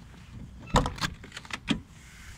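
Car door of a 2003 Daihatsu Cuore being opened and handled as someone gets in: a loud clunk about three-quarters of a second in, then a quick string of clicks and knocks ending in a sharper one near the end.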